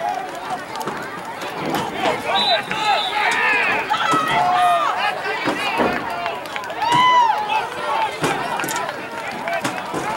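Several voices shouting across an outdoor football field, overlapping and coming and going, as players call out before the snap.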